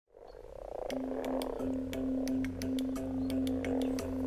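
A crowd of common frogs croaking softly together in a spawning gathering, with a steady low music note held underneath from about a second in.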